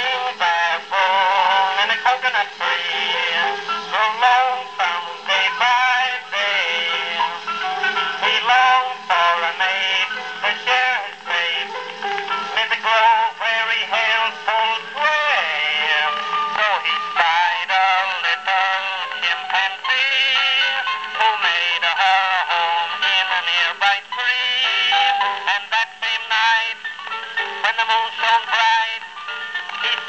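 A 1903 two-minute black wax Edison Gold Moulded cylinder playing on a 1901 Columbia AB graphophone: a male tenor singing a popular song with accompaniment, reproduced acoustically through the horn, thin and without bass.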